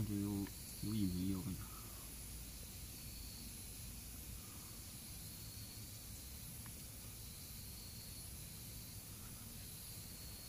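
Faint outdoor night ambience: a steady low hiss with a faint, high insect chirp recurring every second or two. Two short, low voiced hums come in the first two seconds.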